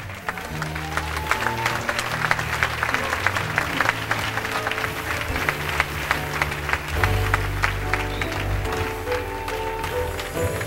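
Live jazz: an upright double bass plays low held notes under a dense, irregular patter of claps.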